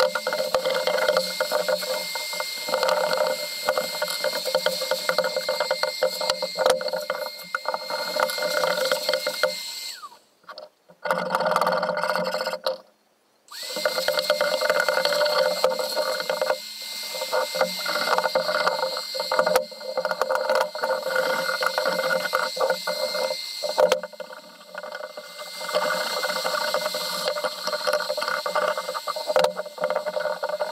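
Shop vacuum running with a steady high whine as its hose is held to the metal wrench handle. About ten seconds in it is switched off and winds down. A few seconds later it is switched back on, spinning up, and runs on with occasional clicks of the hose against metal.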